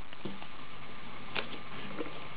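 A few faint, soft ticks of a sheet of paper being folded into accordion pleats and its creases pressed down by hand, over a steady low background hum.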